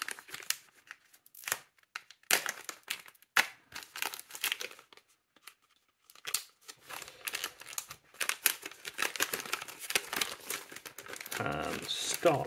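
Sealed foil packet of Ernie Ball Hybrid Slinky guitar strings being cut open with a knife and handled, a run of sharp crinkles with a short lull about halfway through.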